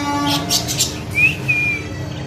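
Caged budgerigars chattering: quick scratchy chirps, then a clear whistle a little past a second in that rises and is held briefly.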